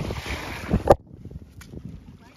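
Wind buffeting the microphone, then a single sharp knock about a second in, the loudest sound, after which it goes much quieter.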